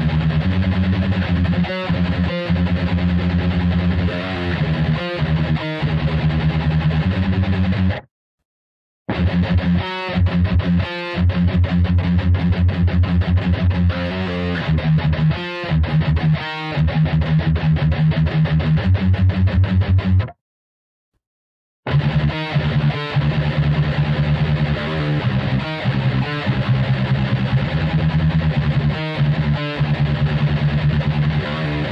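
Distorted electric guitar tuned to standard C playing a heavy metal riff with fast palm-muted chugs. The playing stops dead twice, briefly, about eight seconds in and again about twenty seconds in.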